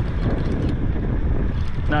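Wind buffeting an action-camera microphone: a steady low rumble, with faint water noise beside the boat.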